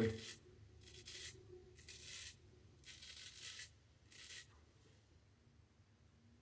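Palmera 14 straight razor scraping short, stubborn stubble on the tip of the chin: a handful of short, faint scraping strokes about a second apart, ending after about four and a half seconds.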